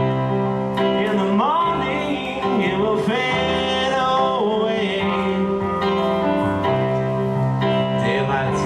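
Electronic keyboard playing sustained chords while a man sings over it in long, gliding held notes.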